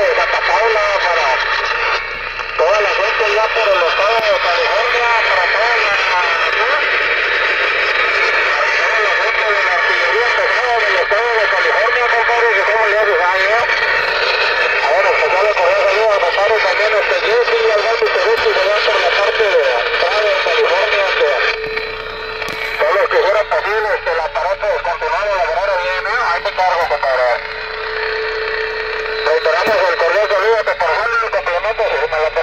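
Voices coming through a DX 33HML mobile radio's speaker, thin and tinny with no bass and a constant hiss of static. They are not intelligible. A steady tone cuts in twice in the last third.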